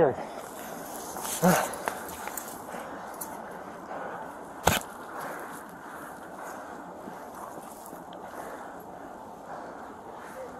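Steady outdoor background noise, with a brief voice about one and a half seconds in and a single sharp knock a little before the five-second mark, the loudest sound here.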